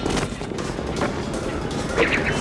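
Film score music running under a fight scene's mixed sound effects, with a few faint knocks.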